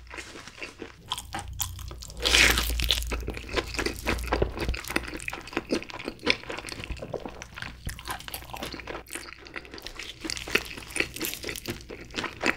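Close-miked biting and chewing of crispy sauce-glazed Korean fried chicken: a loud crunchy bite about two seconds in, then many small crunches of chewing.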